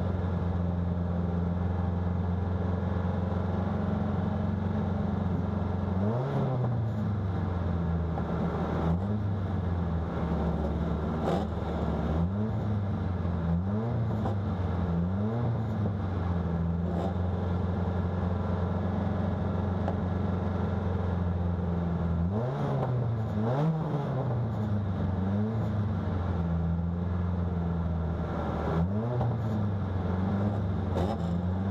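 Car engine idling at a standstill and blipped again and again, the revs jumping up and falling back each time. There is a run of quick revs, then a stretch of plain idle, then a few more revs near the end.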